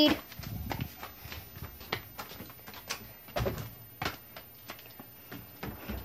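Scattered light taps and knocks, irregular, about one every half second to a second, with a few soft low thumps between them.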